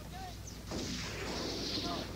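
A noisy, non-musical passage of a 1990 grindmetal demo cassette: a steady low tape hum, then a rush of noise with brief whistling squeals coming in just under a second in.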